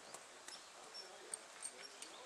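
Faint hoofbeats of a ridden horse moving over soft arena dirt, heard as light scattered clicks.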